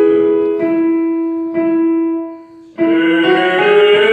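Piano keyboard playing a vocal-exercise pattern: three notes struck about a second apart and held. After a short dip, a male voice starts singing the exercise near the end, wavering in pitch over the piano.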